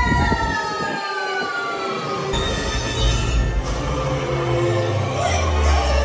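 Dark-ride soundtrack playing through the ride's speakers. A pitched tone slides slowly down over the first two seconds, then low bass notes and a melody come in.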